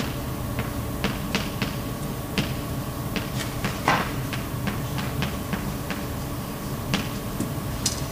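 Chalk writing on a blackboard: a dozen or so short, irregular taps and clicks as the chalk strikes the board, over a faint steady hum in the room.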